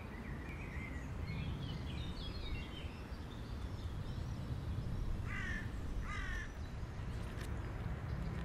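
Outdoor park ambience with a steady low rumble. Small birds chirp through the first few seconds, then two harsher bird calls come about five and six seconds in.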